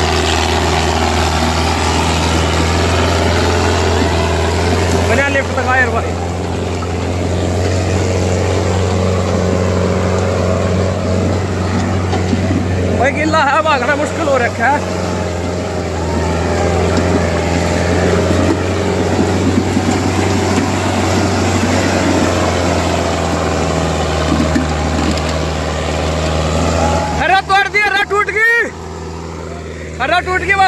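Sonalika 750 tractor's diesel engine running steadily under heavy load, dragging a disc harrow through wet mud. Men's voices call out a few times over it.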